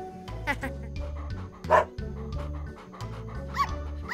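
Cartoon puppies yapping, with short high yips near the end and one louder yap about halfway through, over light background music with a steady bass pattern.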